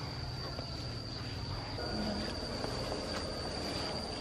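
A steady, high-pitched insect trill, one unbroken tone, over a low rumble.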